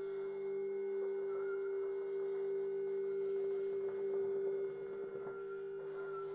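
A quiet, steady, pure-sounding held tone in contemporary music for bassoon and live electronics, sustained without wavering. A brief faint high hiss comes about three seconds in.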